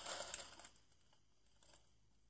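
Faint rustle of a cardboard gift box and its paper inserts being handled, dying away to near quiet within the first second.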